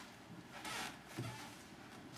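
Faint movement sounds of someone coming through a doorway: a brief rustling scrape, then a soft low bump about a second in.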